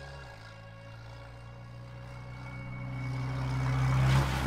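A car approaching along the road and passing close by, its tyre and engine noise growing steadily louder to a peak at the very end.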